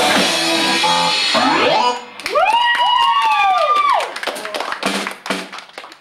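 Live rock band with electric guitar and drum kit finishing a song. The full band drops away about two seconds in, leaving a few long notes that bend up and back down over scattered drum hits. The music then fades out near the end.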